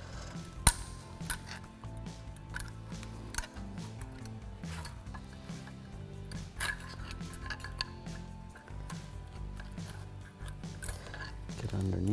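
Scattered metallic clicks and scrapes of a flat-blade screwdriver prying a pad slide clip off a rusty brake caliper bracket. The sharpest click comes just under a second in. Soft background music with held, changing notes runs underneath.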